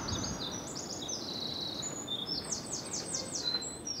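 Small birds chirping, with quick runs of short high notes and a fast trill a little past halfway, over a soft steady background of outdoor noise.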